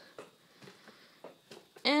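A few faint ticks and rustles of things being handled at close range in a small room, then a woman starts talking near the end.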